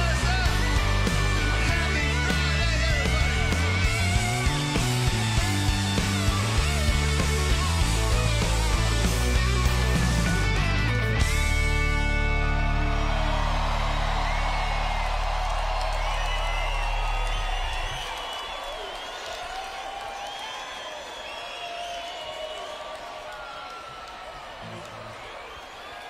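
Live country band with drums and electric guitar playing the end of a song, finishing on a held final chord about eleven seconds in that rings out and dies away. A crowd cheers, yells and whistles over the ring-out and keeps cheering, fading, until near the end.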